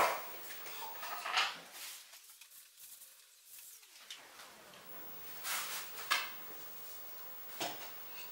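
Faint, intermittent rustling of a plastic bag and light scraping as white cornmeal is scooped out with a plastic measuring cup, with a few short rustles in the second half.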